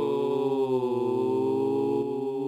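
Two cartoon voices hold one long, steady yell together, their pitches wavering slightly.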